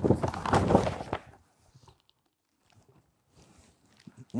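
Large sheets of corrugated cardboard flapping and rustling as they are waved about, stopping after about a second.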